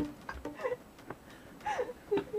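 Faint, low voices in a small room, with a few light clicks.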